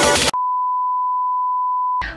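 Electronic dance music cuts off about a third of a second in. It is followed by a single long, steady electronic beep at one pitch, like a test tone.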